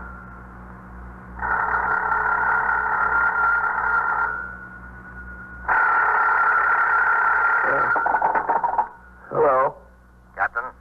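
A telephone bell ringing in long rings of about three seconds each, with short pauses between them; the last ring stops about a second before the end, and a short voice follows.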